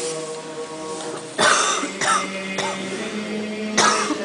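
Orthodox liturgical chanting with long held notes, with a loud cough about a second and a half in and a short sharp noise near the end.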